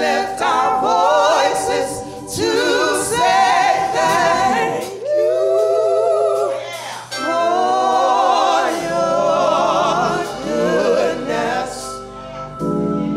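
Gospel praise ensemble of three voices, two women and a man, singing through microphones in harmony. They sing phrases of a few seconds each with long held notes that waver in vibrato.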